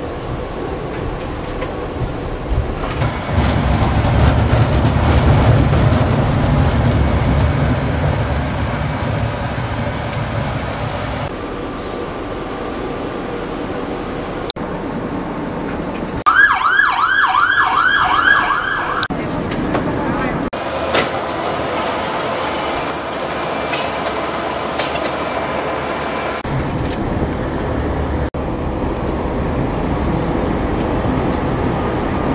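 Running noise from inside a moving tram, a low rumble that changes abruptly several times as short clips are cut together. Just past the middle, an emergency vehicle's siren wails quickly up and down, about three sweeps a second, for about three seconds.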